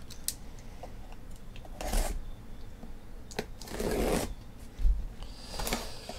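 A blade slicing the packing tape on a cardboard shipping case, with the cardboard being handled: a few short scraping, tearing strokes, the longest about four seconds in, and a couple of sharp clicks.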